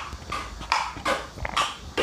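Wet slurps of soaked basil seeds and liquid sucked from a metal spoon, about four short slurps in quick succession.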